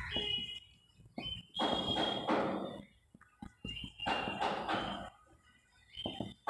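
Marker writing on a whiteboard: several scratchy strokes about a second long, separated by short pauses, some starting with a thin high squeak.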